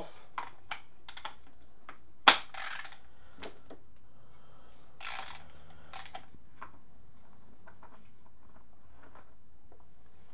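An oil filter cap wrench and ratchet working a spin-on oil filter off a Suzuki Bandit 1200 engine: scattered metal clicks and knocks, the loudest a single sharp knock about two seconds in, with a brief rasp about five seconds in.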